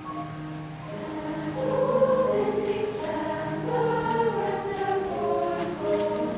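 Girls' choir singing on long held notes in several parts at once, growing louder about two seconds in.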